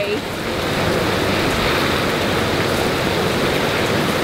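Hot tub jets running, the water churning and bubbling in a steady rush of noise.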